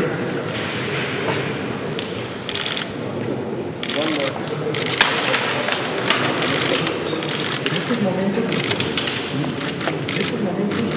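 Press cameras' shutters firing in short bursts of rapid clicks, over steady background chatter of a crowd.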